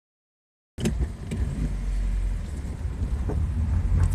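Low, steady rumble of a truck driving slowly on a sandy dirt street, heard from inside the cab, with a few light knocks. The sound starts abruptly under a second in.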